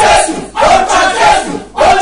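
A man loudly shouting a fervent prayer in short repeated chanted phrases, with two brief breaks for breath.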